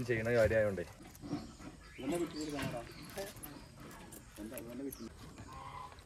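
A man talking, loudest in the first second, then quieter talk with faint short clicks in between.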